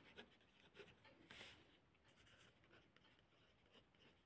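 Faint scratching of a pen writing on notebook paper, with one slightly louder stroke about a second and a half in.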